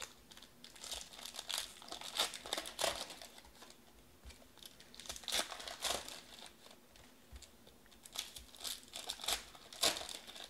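Foil wrapper of a 2019 Panini Elite Extra Edition card pack crinkling as it is handled and torn open by hand, in three bouts of crackling with short pauses between.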